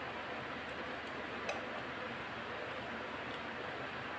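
Steady background hiss with a few faint crunching clicks from crisp tortilla chips being chewed; the clearest comes about a second and a half in.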